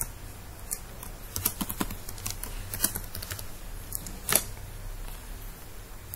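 Computer keyboard being typed on: a few scattered keystrokes, then one louder click a little past four seconds in.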